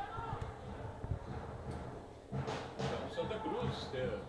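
Faint, distant voices of players and people around the pitch over open-air stadium background noise, with voices rising briefly near the start and again in the second half.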